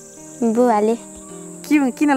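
A steady high-pitched insect chirring, typical of crickets in grass, runs under short bursts of a person's voice about half a second in and again near the end.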